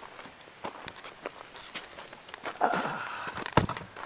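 Footsteps and handheld-camera handling: scattered clicks and scuffs, a rustling patch a little before three seconds in, and one louder knock about three and a half seconds in.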